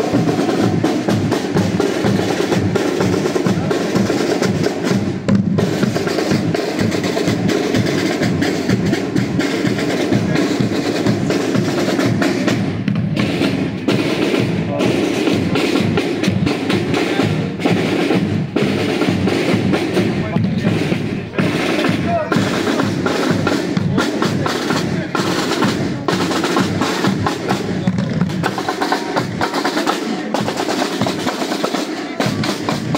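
A group of marching snare drums played together in a fast, unbroken drum pattern with rolls.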